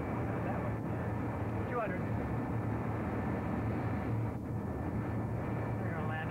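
Steady airliner flight-deck noise of engines and airflow on the approach, with a steady low hum underneath. A faint voice comes through briefly about two seconds in.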